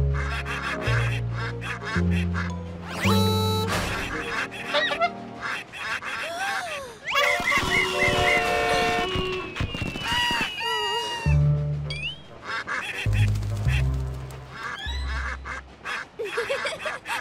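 Cartoon ducks quacking and honking over playful background music with a plodding bass line.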